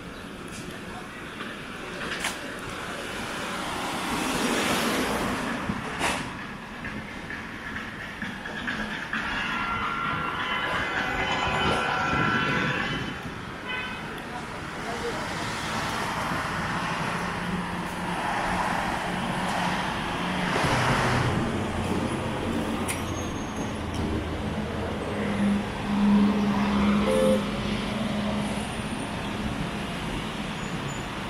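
Busy city street ambience: traffic passing with voices of passers-by mixed in. A louder vehicle with a low steady hum passes a few seconds before the end.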